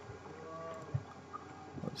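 A quiet pause with faint room tone and hum through a meeting microphone. There is a soft low thud about halfway, and speech starts right at the end.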